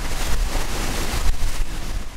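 Water rushing and spraying along the hull of a moving ferry, with heavy wind rumble on the microphone; a loud, steady rush of noise.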